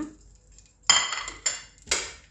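Three sharp metallic knocks on a stainless steel stockpot, about a second in, half a second later and just before the end, each ringing briefly.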